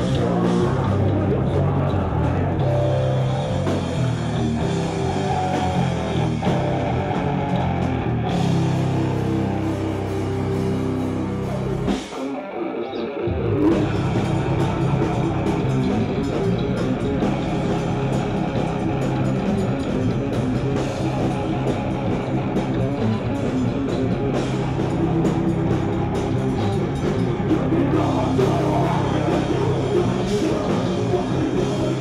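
Live heavy metal band playing loud distorted electric guitars, bass and drum kit. About twelve seconds in the bass and drums drop out for roughly a second, then the full band crashes back in.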